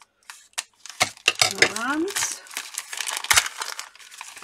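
Scissors snipping into a paper wrapper, with a couple of sharp clicks, then paper crinkling and rustling as the package is opened and unfolded by hand.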